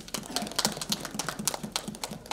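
A quick, irregular run of sharp clicks, several a second.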